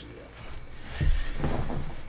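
A bump or knock about a second in, then a short stretch of a voice.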